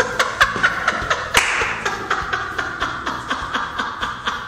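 Laughter punctuated by a string of sharp, irregular hand claps, several a second.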